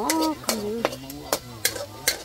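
A metal ladle scraping and stirring finely chopped food around a steel wok, about four separate scrapes against the metal, with a faint sizzle underneath.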